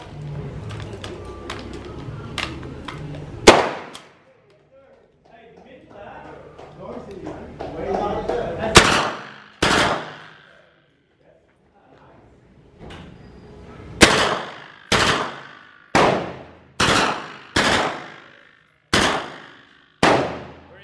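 HK MP5 9mm submachine gun firing short three-round bursts on its burst setting, with about nine bursts in all. The first comes after a few seconds of clicks from handling the gun, two follow close together, and near the end comes a run of six about a second apart.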